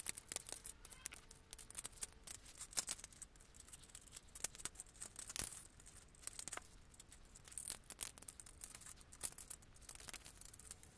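Rapid small clicks and rustles of plastic Lego parts being handled and pressed together, sped up along with the footage. The clicks come thick and irregular, with a sharper snap about five seconds in.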